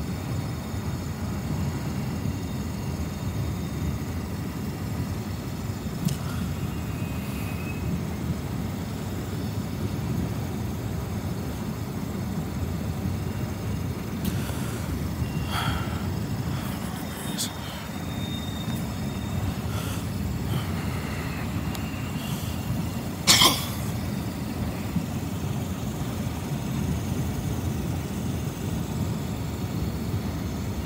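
Freight train of autorack cars rolling past: a steady low rumble of wheels on rail, with a few brief high tones. A single sharp knock about two-thirds of the way through is the loudest sound.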